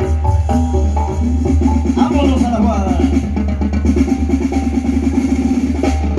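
Loud music with drums and a deep, steady bass line.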